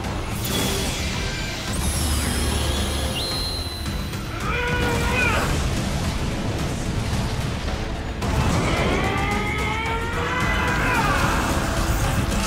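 Cartoon battle soundtrack: dramatic music mixed with action sound effects. Sweeping, bending glides come in about four seconds in and again from about eight seconds in.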